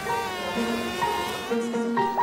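Cartoon bees buzzing in short, steady-pitched buzzes over light background music.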